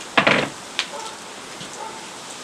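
Charcoal grill with mackerel on skewers crackling steadily, broken by a short loud burst of noise just after the start and a single sharp click shortly before a second in.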